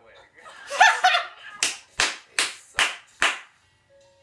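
A loud burst of laughter, then five sharp hand claps in an even rhythm, about two and a half a second.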